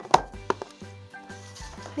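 Handling knocks as a plastic hair-straightening brush and its power cord are lifted out of a cardboard box: two sharp knocks early on, the first the loudest, then light rustling. Light background music runs underneath.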